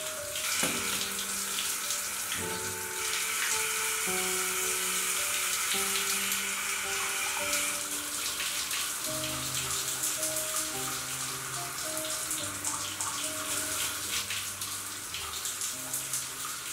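Shower water spraying and splashing steadily, with slow, dark background music of single held notes changing every second or so.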